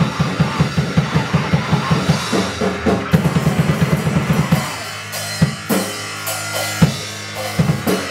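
Raw punk noise band playing live: drums, bass and synthesizer noise in a fast, pounding beat. About four and a half seconds in, the fast beat breaks off into scattered drum hits over a held low drone.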